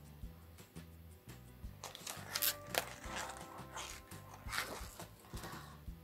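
Quiet background music with a steady, stepping bass line, with brief paper rustles from the pages of a spiral-bound pattern book being turned, the clearest about two and a half seconds in.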